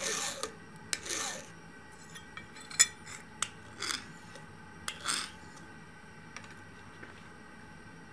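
Hand file rasped across a quenched 1075 carbon steel knife blade in a file test of its hardness: about four short strokes with a few sharp clicks of the file against the steel, stopping about five seconds in.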